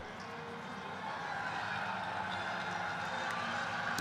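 Steady low crowd murmur from spectators in the stands, with faint scattered cheering and clapping.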